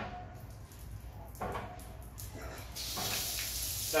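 Water from the shower mixer's spout outlet, starting about three seconds in as a steady hiss once the flow is switched from the overhead shower to the spout.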